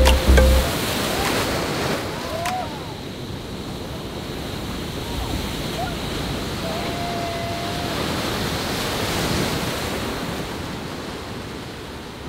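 Whitewater from artificial waves in a wave pool, a steady rushing wash that swells and eases as the waves break and roll through. A music track with a heavy bass cuts off within the first second.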